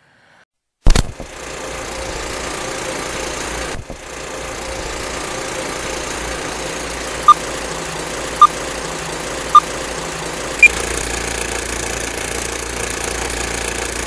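Intro sound effect: a sudden loud hit about a second in, then a steady mechanical whirring hum, with four short electronic beeps about a second apart past the middle, the last one higher in pitch.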